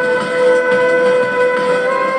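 Saxophone holding one long, steady note, moving to a new note near the end, over a backing track.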